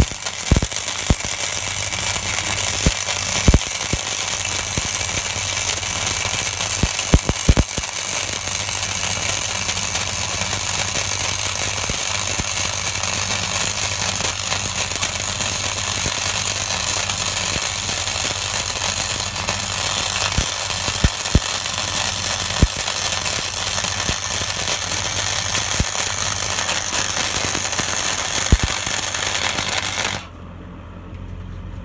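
Flux-core wire welding arc from a Sealey Mighty MIG100 gasless welder laying a bead on 3.5 mm steel at maximum current: a loud, steady crackle with scattered sharper pops and a low hum under it.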